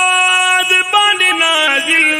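Wordless vocal interlude of a Pashto naat: men's voices hum or hold the melody in long sustained notes, each lasting about a second, stepping to a new pitch about a second in.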